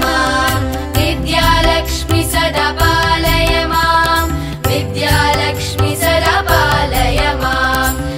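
Indian devotional music in a Carnatic style: a sung melody with gliding ornaments over a steady drone and percussion.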